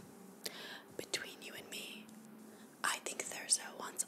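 A woman's whispered, soft-spoken speech.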